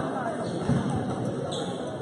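A basketball bouncing on a gym floor during play, with one louder bounce a little past a third of the way in, over the chatter of spectators.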